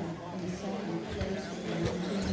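Indistinct talking of several people, with two short knocks about a second in and again near the end.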